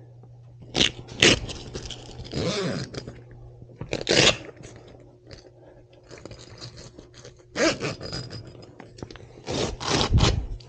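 Heavy fabric of a soft truck-bed topper being pulled and handled as its rear flap is opened: a string of sudden scraping, crinkling rasps of uneven length, over a faint steady low hum.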